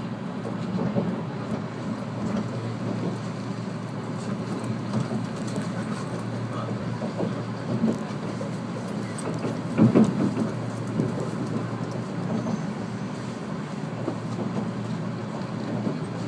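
A JR 485-series electric train's running noise heard from inside the passenger car: a steady low rumble of wheels on rail, with one louder knock about ten seconds in.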